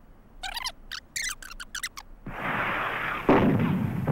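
Battle sound from war footage playing on a television: a short run of high, wavering chirps, then loud rushing noise from about two seconds in with a sharp blast a little after three seconds.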